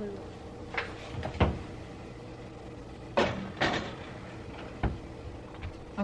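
Kitchen oven door being opened and shut as a metal loaf pan goes in to bake: a handful of separate clunks and knocks, about five, spread over several seconds above a faint steady hum.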